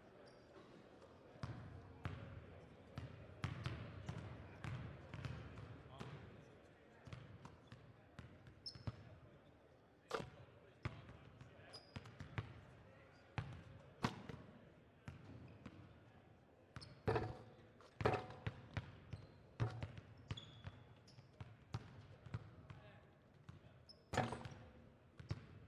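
Basketballs bouncing on a hardwood gym floor in irregular dribbles and bounces as players warm up, over indistinct crowd chatter in the large gym.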